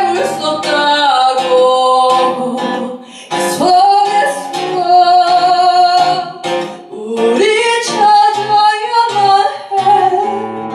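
A live acoustic song: a woman sings three long phrases, holding and gliding between notes, with short breaks about three and seven seconds in, accompanied by a fingerpicked acoustic guitar.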